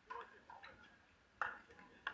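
Sharp pops of pickleball paddles striking the plastic ball during a rally, the loudest about a second and a half in.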